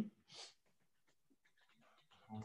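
Near silence broken by one short breath drawn in about half a second in, followed by a few faint ticks.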